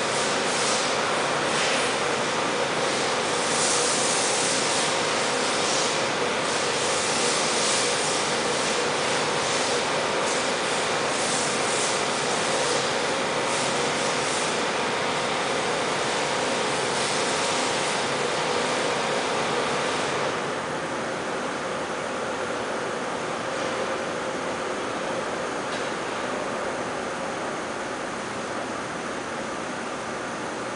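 Steady rushing background noise with a faint steady hum underneath; the hiss eases and the noise gets a little quieter about twenty seconds in.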